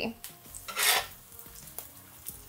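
Quinoa fritters frying in oil in a cast iron skillet, the oil sizzling quietly. There is a short, louder burst just under a second in as a metal spatula slides under a fritter to flip it.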